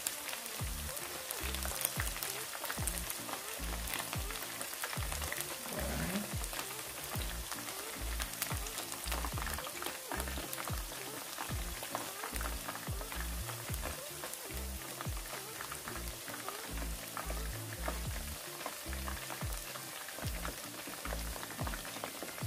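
Cornstarch-coated chicken thigh pieces sizzling and crackling steadily in hot vegetable oil in a skillet. Background music with a steady bass line plays underneath.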